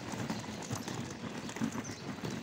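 Small plastic wheels of a wheeled suitcase rattling as it is pulled over rough dirt and gravel, a continuous uneven clatter.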